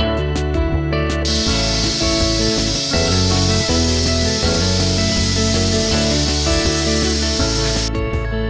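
COMBY3500 steam cleaner's nozzle hissing steadily as it sprays steam. The hiss starts about a second in and cuts off suddenly just before the end, over guitar background music.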